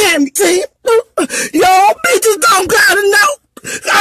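A woman's voice making drawn-out, wavering sounds without words, several in a row with short pauses between them.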